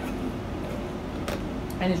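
A steady low hum, with one short click a little over a second in; a woman starts speaking near the end.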